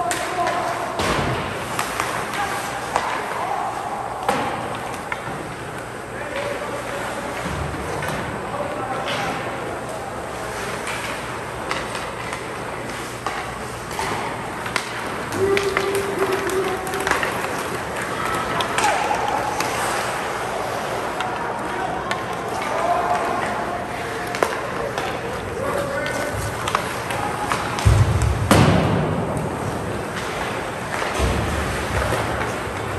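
Ice hockey rink during play: skate blades on the ice, scattered clacks of sticks and puck, and voices from players and spectators across a large hall. A loud, heavy thump comes about two seconds before the end.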